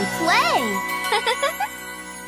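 The end of a children's TV theme song: a held chord with a gliding note that rises and falls about half a second in, then a few shorter wavering notes about a second in, fading slowly.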